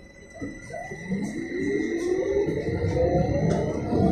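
Sinara 6254.00 trolleybus's DTA-3U1 asynchronous traction motor and its drive whining as the trolleybus pulls away and accelerates. The whine rises steadily in pitch and grows louder from about a second in, over a thin steady high tone.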